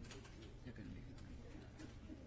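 Near silence: faint room tone with a steady low hum, soft distant murmuring and a few faint clicks.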